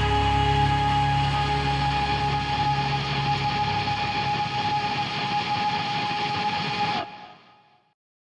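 The final held chord of a metal song, with distorted electric guitars ringing out. The bass end fades away about halfway through. The chord then cuts off about seven seconds in, leaving a brief fading tail.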